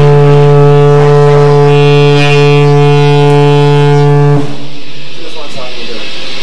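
A single sustained note from an amplified electric guitar, held dead steady and then cut off abruptly about four and a half seconds in.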